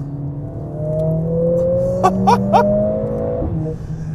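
Mercedes-AMG CLA 45 S's turbocharged 2.0-litre four-cylinder accelerating hard in Race mode, heard from inside the cabin: the engine note rises steadily in pitch for about three seconds, then drops abruptly near the end. Three short rising chirps sound over it about halfway through.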